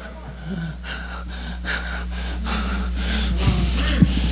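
A man breathing hard into a handheld microphone, quick noisy breaths about twice a second that grow louder toward the end, over a steady low hum.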